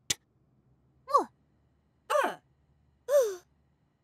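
A short click, then three brief wordless voice sounds from cartoon characters, about a second apart, each sliding down in pitch, with silence between them and no music.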